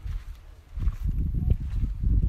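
Low, uneven rumbling and thudding on the microphone of a handheld camera carried while walking outdoors, starting suddenly under a second in and loud from then on.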